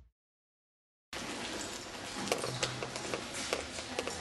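About a second of dead silence at an edit, then faint indoor room noise with scattered small clicks and knocks.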